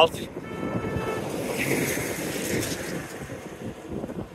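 A delivery truck gives a short, steady honk about half a second in, then passes close by with a rush of engine and tyre noise that swells and fades. Wind buffets the microphone.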